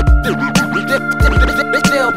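Turntable scratching over a hip hop beat: quick back-and-forth sweeps of a record under a steady kick drum.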